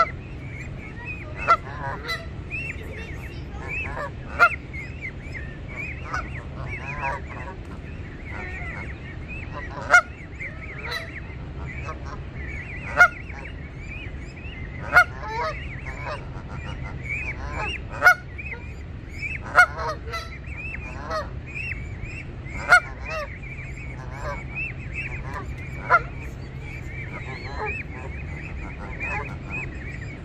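Canada geese calling: short, loud honks every few seconds from the adults over continuous high, wavering peeping of their goslings.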